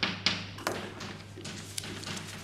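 Chalk writing on a blackboard: a run of sharp taps and softer strokes, the clearest a little after half a second in and near the end.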